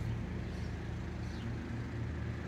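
A steady low mechanical hum, like a motor running, over faint outdoor background noise.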